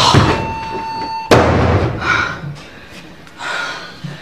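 An interior door slammed shut hard, a single heavy bang about a second in.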